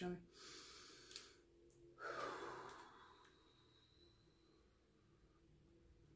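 A person's breath in an otherwise near-silent room: one soft exhale, like a sigh, about two seconds in, fading over most of a second.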